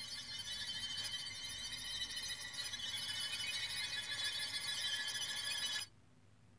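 A young boy crying in a long, high-pitched wail that cuts off suddenly near the end.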